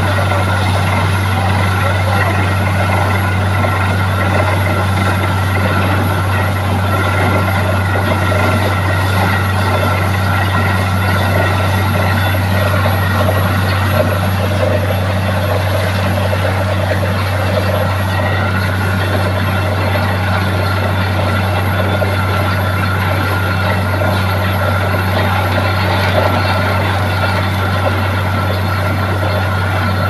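Borewell drilling rig and its air compressor running steadily and loudly, with a hiss and spatter of compressed air blowing water up out of the newly struck bore. The gush is the water yield being tested, about two inches of flow.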